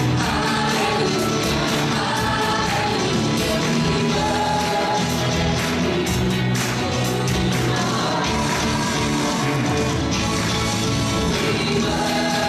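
Live gospel praise song: a group of singers over a band of guitars, bass and drums, with a steady beat.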